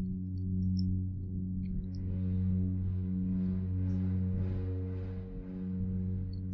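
Soft ambient background music: a steady low drone of held tones, with fainter upper notes swelling and fading.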